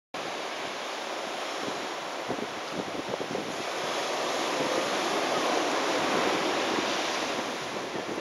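Surf washing onto a beach, a steady rushing that swells a little around the middle, with some wind on the microphone.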